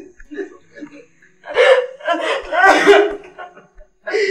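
A woman sobbing without words: faint catches of breath, then two loud bursts of crying in the second half.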